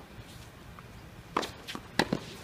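Tennis ball hit by rackets and bouncing on a hard court during a doubles serve and return: a few sharp pops in the second half, one loud hit a little past halfway and another at the very end.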